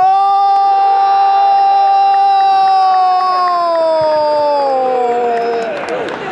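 A football commentator's long drawn-out goal cry: one shouted note held for about five seconds, which slides lower in pitch over its last couple of seconds as his breath runs out.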